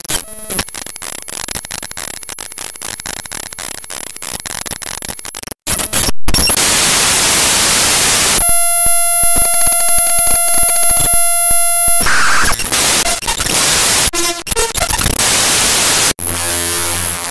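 Harsh edited TV-static sound effects: crackling static with many clicks, then a sudden loud hiss about six seconds in. A steady electronic beep with overtones follows, chopped by clicks, and then the static returns.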